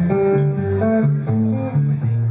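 Live band music led by an electric guitar on a Flying V-style guitar, playing a riff of single low notes that change several times a second.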